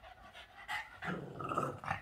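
Boston terrier growling, louder and rougher in the second half, a play growl over a ball in his mouth that he does not want to give up.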